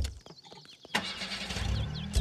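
A thump at the very start, then an SUV's engine starting about a second in and running with a low steady rumble; small birds chirp.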